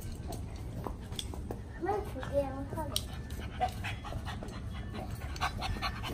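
A puppy panting, with a short wavering vocal sound about two seconds in.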